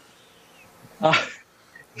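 A pause in the conversation with a faint steady background hum, broken about a second in by a man's short, hesitant "uh".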